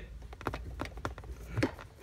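A BMW's manual gear shifter being shaken and moved by hand: a string of light, irregular clicks and knocks from the freshly refitted short shifter.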